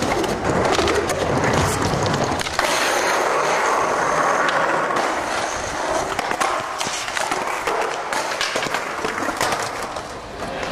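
Skateboard wheels rolling on smooth concrete in a steady rumble, with occasional sharp clacks of the board hitting the ground or obstacles during tricks.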